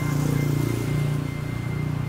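A vehicle engine idling: a low, steady hum.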